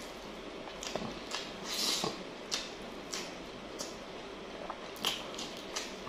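A person chewing food with the mouth close to the microphone: quiet, wet mouth clicks and smacks, roughly one every half second to second, with a slightly louder smack about two seconds in.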